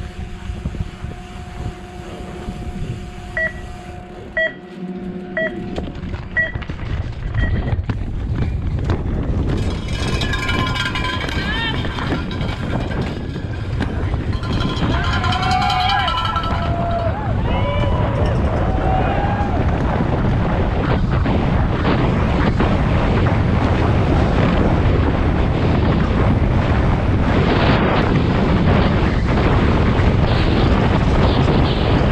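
Electronic start-gate timer giving a countdown of short beeps about a second apart. Spectators shout and cheer as a mountain bike sets off down a dirt downhill course, and the noise of wind on the helmet-camera microphone and tyres on the trail grows louder as the bike gathers speed.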